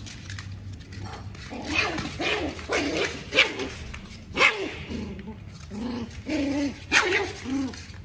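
Puppies barking and yipping in play: a quick string of short, high barks and yips that starts after a quiet first second or so.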